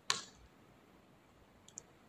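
A single sharp computer mouse click, followed by quiet room tone and one much fainter click near the end.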